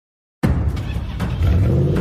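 Loud intro music with a heavy, low engine-like sound effect, starting suddenly about half a second in.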